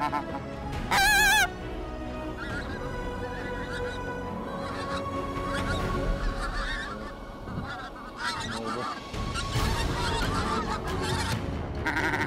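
A flock of pink-footed geese calling in flight, many overlapping honks, with one loud wavering call about a second in.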